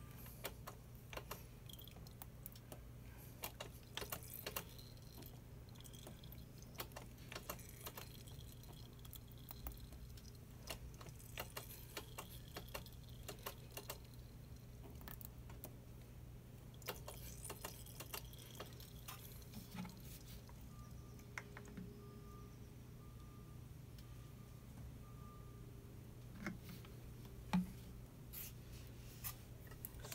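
Faint, scattered small clicks and taps from a wrench being worked on a motorcycle's rear brake caliper bleeder valve, over a steady low hum.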